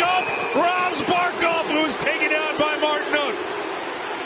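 A man's commentary speech over steady arena crowd noise, with a few short sharp knocks.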